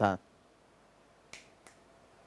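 Two short, sharp clicks about a third of a second apart, the second fainter, just after a man finishes a word.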